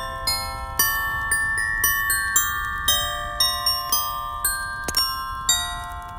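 Instrumental Christmas music: a bell-like melody on a glockenspiel-type mallet instrument, about four struck notes a second, each ringing and fading, over a steady low rumble.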